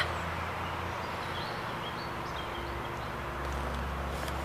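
Quiet outdoor ambience: a steady low background rumble with a few faint bird chirps about halfway through.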